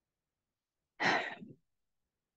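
One short, audible breath from the preacher, about a second in and lasting about half a second, between pauses of silence.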